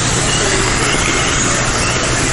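Kyosho Mini-Z 1:28-scale electric RC cars with 2500Kv brushless motors running laps on an indoor track: a steady, even whir of motors and tyres.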